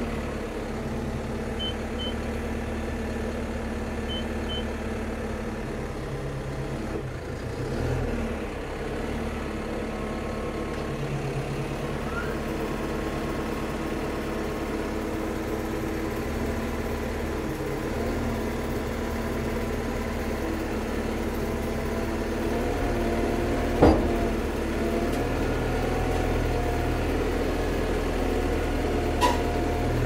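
Caterpillar bulldozer's diesel engine running steadily under load, heard from inside the cab as the machine tracks up onto a trailer. A backup alarm beeps in pairs in the first few seconds, and a sharp clunk comes about 24 seconds in.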